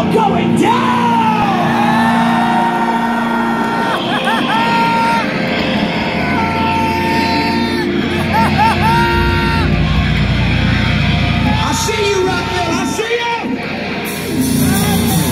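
A rock band playing live through a big outdoor PA, heard from inside the crowd, with a voice over the speakers and crowd noise around. Held, gliding notes run through the middle, and the bass thickens in the second half.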